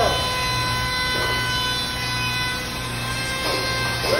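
Corded handheld power tool's electric motor running steadily with a constant high whine.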